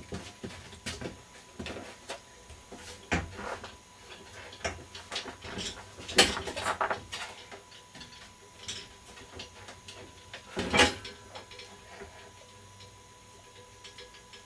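Scattered knocks and clanks from a weight bench and an 85 to 90 lb loaded barbell as the lifter lies back and takes the bar from its rack, with the loudest clank about eleven seconds in.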